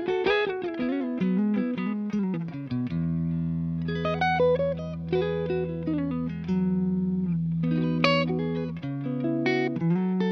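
Jackson X Series Soloist electric guitar played through an amp. A quick run of single notes comes first, then a low chord rings for about six seconds while melody notes are picked over it, and a fresh chord is struck near the end.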